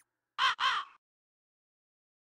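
A crow cawing twice in quick succession, two short harsh calls about half a second in.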